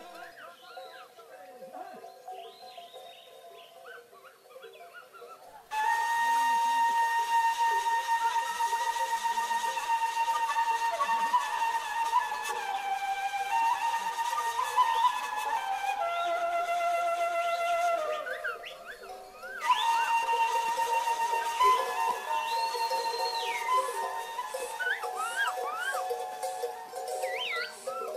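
Background music: a flute melody of long held notes that comes in about six seconds in, after a quieter start with faint short chirps, and drops out briefly two-thirds of the way through.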